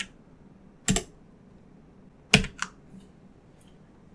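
A few separate keystrokes on a computer keyboard: one sharp click about a second in, two close together about two and a half seconds in, and a faint one near the end.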